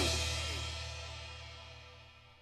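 Heavy rock band's final chord ringing out and fading away, with held low bass notes, a cymbal wash and a few falling slides in the first second.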